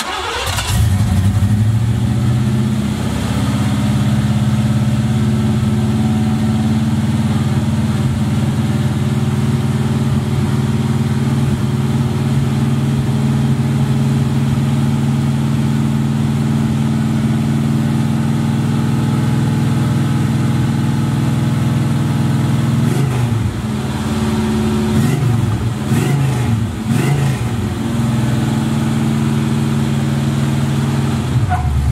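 Box Chevy Caprice's 312 Chevy V8 catches right away and settles into a loud, steady idle. Its pitch wavers up and down a few times from a few seconds past the middle. It is running rich on fresh spark plugs, burning off excess fuel left in the cylinders by the fuel-fouled old plugs.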